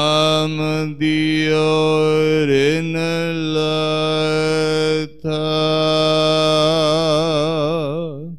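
A man's voice chanting Gurbani scripture, the Hukamnama, through a microphone in long held notes. It breaks briefly about a second in and again about five seconds in, and wavers in a slow vibrato near the end.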